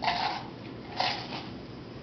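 Two brief rustling handling noises close to a podium microphone, about a second apart, as someone works the equipment at the lectern.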